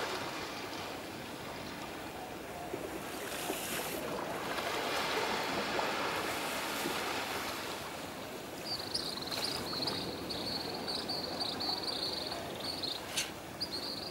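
Small sea waves washing on a shallow sandy shore, a steady rush that swells for a few seconds midway. From about nine seconds in, a high, thin, sustained note joins above the water sound.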